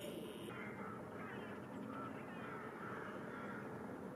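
Crows calling repeatedly, short calls starting about a second in, over a low steady background noise of the outdoors.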